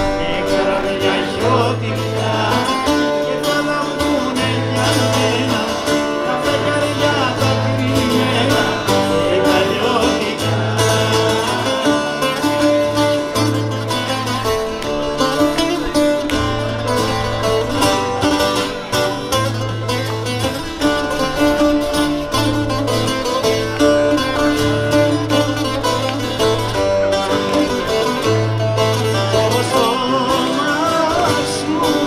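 Live music: a man singing to his own strummed acoustic guitar, with a low bass line underneath.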